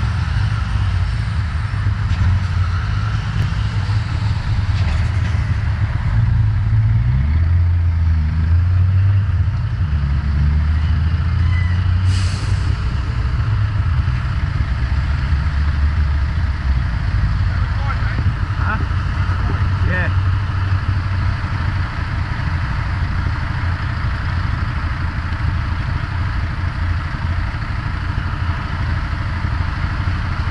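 Heavy lorry's diesel engine running close by, a steady low rumble that grows heavier for a while, with a short hiss about twelve seconds in.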